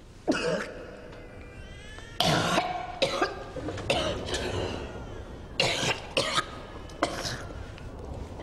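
A woman coughing and gasping in pain: a string of about eight short, harsh coughs and strained breaths, roughly one a second.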